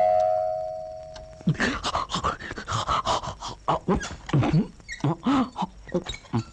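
A single held ringing tone fades away over the first second and a half. Then a quick run of short vocal sounds, rising and falling in pitch, goes on for the rest of the time.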